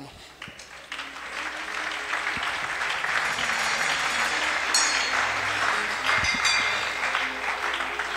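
Congregation applauding, swelling about a second in and then holding steady.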